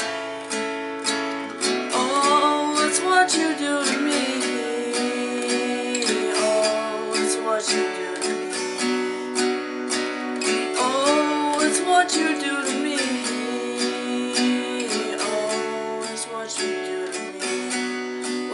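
Sunburst steel-string acoustic guitar strummed in a steady, continuous rhythm. A male voice sings melody lines over it at times, around the second and the eleventh seconds.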